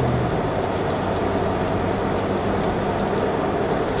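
Steady road and engine noise inside a moving car's cabin. A low engine hum eases off about half a second in.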